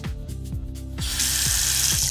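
Water running from a newly installed Hansgrohe Metris single-lever chrome bathroom faucet, starting about halfway through as a steady hiss: the first flow test after installation.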